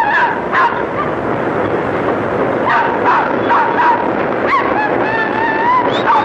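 Steady din of street traffic, with car horns honking several times: short honks about a second in and around three to four seconds, and a longer, slightly rising honk near the end.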